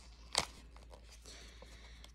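A single sharp click followed by faint rustling as the packaging of a gel face mask is handled and opened, over a low steady hum.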